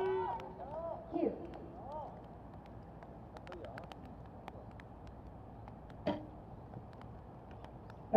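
Quiet outdoor ambience with faint voices in the first second or so and scattered faint clicks. About six seconds in comes a single sharp snap: a recurve bow being shot.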